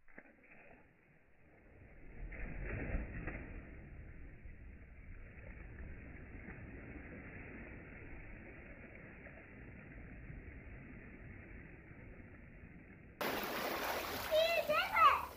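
A cannonball jump into a swimming pool heard in slow motion: the splash comes about two to three seconds in as a deep, muffled rush, then drags out into a long, low churning of water. Near the end, normal-speed splashing cuts back in suddenly.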